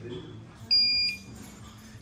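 Wall-mounted non-contact infrared forehead thermometer giving one short, high-pitched beep about a second in, signalling a completed temperature reading.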